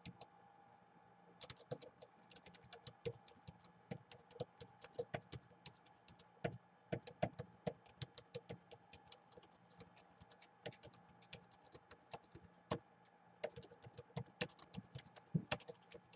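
Typing on a Gateway laptop's built-in keyboard: quick, uneven key clicks that start about a second and a half in and then run on almost without a break.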